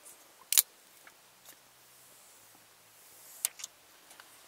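Protective plastic film being peeled off a Cobra CB radio's display: a sharp crackle about half a second in, a few faint ticks, and another crackle near the end.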